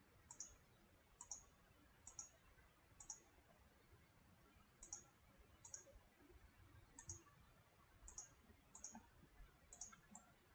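Faint computer mouse button clicks, about ten at uneven intervals of roughly a second, each a quick press-and-release double tick, as faces of a CAD model are picked one by one in the software.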